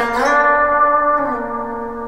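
Semi-hollow electric guitar playing a single picked lead note that slides up from B flat to D right after it is struck, then rings and slowly fades, stepping down slightly in pitch a little over a second in.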